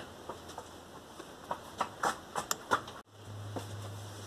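Cardboard LP record sleeves being handled: scattered light taps and rustles for about three seconds. The sound then drops out suddenly and a steady low hum follows.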